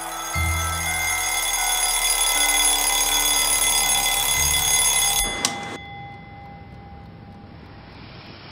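Suspense film score: a swelling drone of many sustained high tones over two deep booms. It cuts off abruptly with a sharp hit about five and a half seconds in, leaving a quiet hiss and a faint steady tone.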